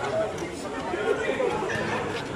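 Spectators' chatter at a basketball game, several voices talking over one another.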